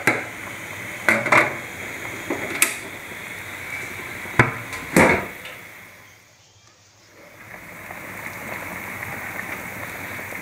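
Quail masala simmering in an aluminium pot, with a few sharp metal clinks and knocks of a utensil against the pot, the loudest about four to five seconds in. The simmering fades briefly about six seconds in.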